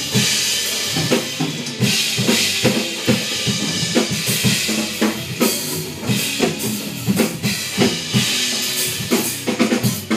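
Acoustic drum kit played in a busy, fast practice groove: rapid kick, snare and tom strokes under a continuous wash of ringing cymbals.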